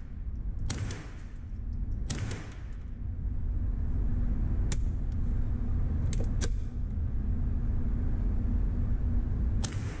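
AR-7 survival rifle firing .22 Long Rifle rounds: about six sharp cracks, spaced unevenly a second or more apart, over a steady low rumble.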